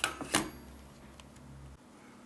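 Two small knocks about a third of a second apart as the opened calculator is handled and set down on a wooden desk. A faint low hum follows and cuts off shortly before the end.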